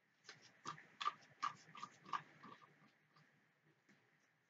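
Pink plastic spoon stirring in a clear plastic cup, clicking against its sides in a quick run of light taps over the first two and a half seconds, then fading to a few faint ticks.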